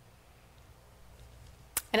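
Near silence: faint room tone with a low hum. Near the end comes a single short click, and then a woman starts to speak.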